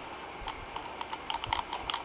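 Faint, irregular small clicks and taps from handling right next to the webcam's microphone, more frequent in the second half.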